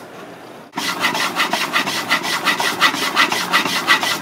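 Hand-pumped wooden reciprocating air engine running. Its piston, crank and flywheels make a fast, even rhythm of wooden rubbing strokes, several a second, which starts abruptly about a second in.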